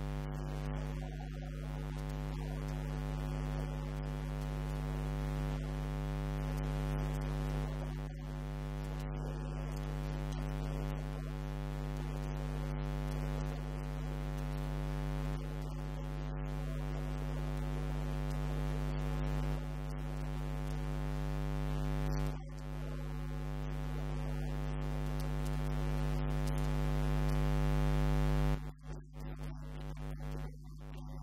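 Steady electrical mains hum with a buzzing stack of overtones, slowly growing louder, then dropping away and breaking up for a moment near the end.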